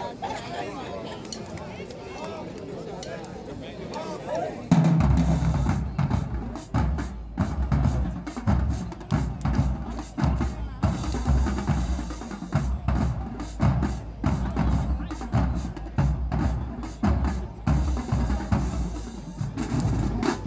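Crowd chatter, then about five seconds in a marching band drumline comes in with a loud hit and plays a fast, dense cadence on snare drums, tenor drums, bass drums and cymbals.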